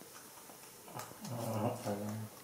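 A man's low, steady hum or moan, about a second long, starting about halfway in.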